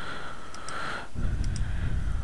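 A few faint computer mouse clicks from the zoom tool being clicked, over steady microphone hiss. A low rumble comes in about a second in.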